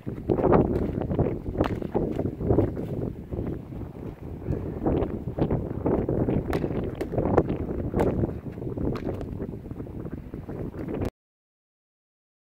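Wind buffeting the microphone, with sharp knocks every second or so from a hurl striking a sliotar against a concrete block wall and the ball rebounding. The sound cuts off suddenly near the end.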